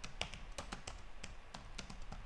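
Computer keyboard typing: an irregular run of short, light key clicks, several a second.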